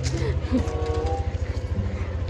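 Motorcycle engine running with a rapid, regular low pulse as the bike pulls away, with wind buffeting the phone's microphone.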